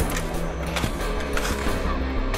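Dark background film music of low, sustained tones, with a few faint clicks.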